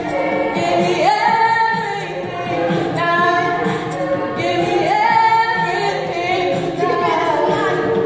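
High-school show choir singing in harmony, several voices together, with an upward vocal slide about a second in and another around four and a half seconds in.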